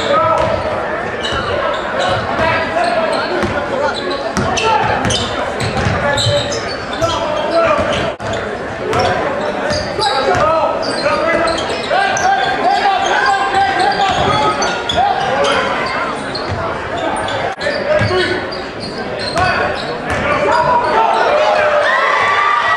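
Live basketball game sound in a gymnasium: a ball bouncing on the court amid a constant hubbub of crowd voices and shouts, echoing in the large hall.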